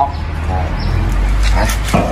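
A dog barking briefly, over a steady low hum.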